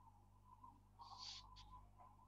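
Near silence: room tone with a low hum, and a faint, brief hiss about a second in.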